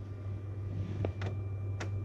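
Flashforge Dreamer 3D printer standing idle with its cooling fans running: a steady hum with a faint high whine. A few light clicks come about a second in and again near the end.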